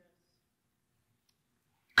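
Near silence: room tone in a pause between spoken words, ending with a man's voice starting sharply at the very end.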